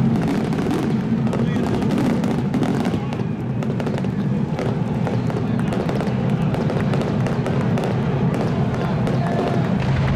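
Fireworks display going off overhead: a dense run of sharp bangs and crackles, over a steady low drone.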